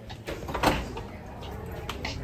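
A metal-framed glass door with a push bar being pushed open: a sharp clunk of the latch about half a second in, and a smaller knock near the end.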